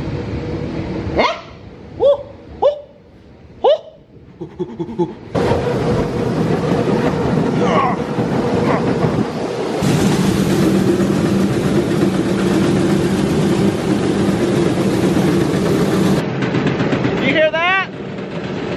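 Galvanised grain conveyor at a load-out bin running empty: a steady mechanical drone that comes in about five seconds in, with a low hum added about ten seconds in. There is no corn left in it, so it is ready to be shut off.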